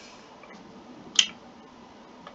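A single sharp click from a computer mouse button about a second in, over faint room hiss.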